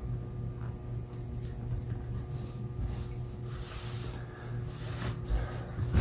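Faint clicks and scrapes of a plastic pry tool pressing a battery connector and its metal retaining clip on a laptop motherboard, with a soft knock near the end as the laptop is handled.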